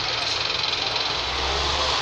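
Steady city traffic noise from queued cars and buses at an intersection, with a low engine rumble coming up about a second in.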